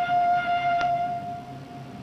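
Train whistle sound effect: one long steady note that thins out in the second half, signalling a train departing. There is a short click partway through.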